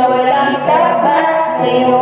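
Several voices singing a Filipino Christmas song in harmony, with held notes that step from pitch to pitch.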